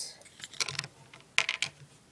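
Hard plastic Lego pieces clicking and clattering as a minifigure is handled on the spinner, in two short clusters of clicks, the louder one about a second and a half in.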